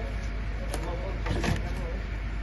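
A vehicle engine running steadily as a low rumble, with faint voices and a couple of short knocks about halfway through.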